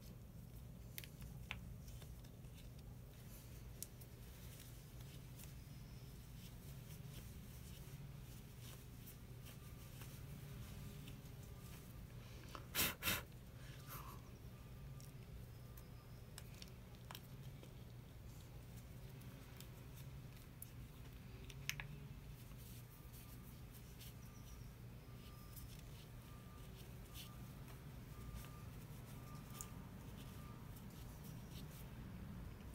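Faint rubbing and small clicks of a rag wiping a motorcycle brake reservoir cap and its rubber bellows, with two short louder strokes in quick succession about thirteen seconds in.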